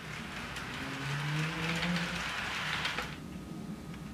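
HO scale model freight train rolling past on sectional track: a steady rolling noise from the wheels, with a few clicks, that swells and then drops off about three seconds in as the cars go by.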